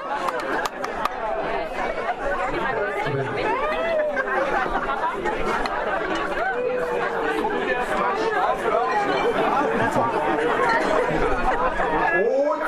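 Crowd chatter: many voices talking at once around the table. A few hand claps die out in the first second.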